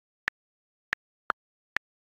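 Four short, sharp digital clicks about half a second apart on dead silence, from a tablet's own interface sounds.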